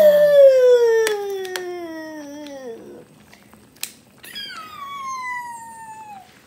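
A house cat meowing twice: one long, loud meow that falls steadily in pitch over nearly three seconds, then a shorter, higher meow near the end. A couple of sharp clinks of utensils come in between.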